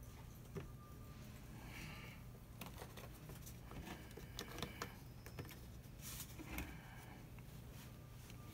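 Faint scattered clicks and rustles of a hand handling and letting go of a clear plastic brake-bleed hose at the caliper, over a faint steady low hum.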